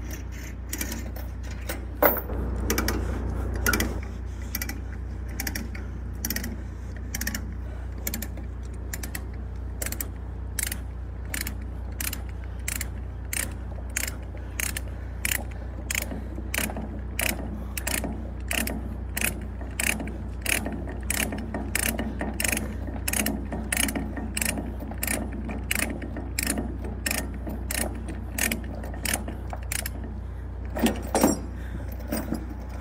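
A ratchet load binder being cranked to tighten a tie-down chain, its pawl clicking steadily about twice a second over a low rumble.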